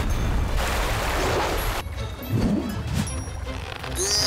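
Cartoon sound effect of a torrent of water rushing and crashing, loud for just under two seconds and then cutting off, over background music.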